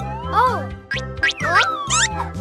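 Cartoon sound effect of a balloon losing its air and flying off: squealing whistles that glide up and down several times, over light children's background music.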